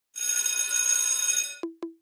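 Intro logo sting: a bright, shimmering bell-like ring held for about a second and a half, then two short low plucked notes near the end.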